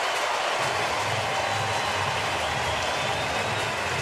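Baseball stadium crowd cheering steadily, the home crowd's reaction to a game-tying hit.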